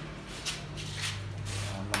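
Brief rustling and rubbing scuffs from handling, several short ones spread through, over a steady low hum.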